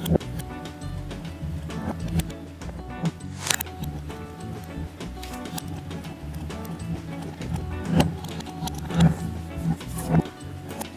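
Background music with steady sustained tones and a low repeating pulse, broken by a few sharp clicks.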